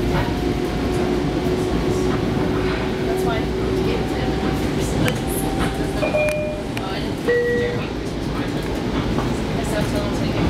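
Inside a Long Island Rail Road commuter train car in motion: a steady low rumble of wheels on track, with a steady hum that fades out about four seconds in and a few brief high tones after the middle.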